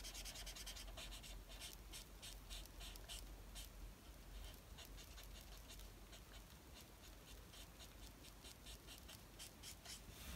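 Faint scratching of an Ohuhu alcohol marker nib worked in short, quick strokes over paper while colouring. The strokes come thick and fast for the first few seconds, then thin out and grow fainter.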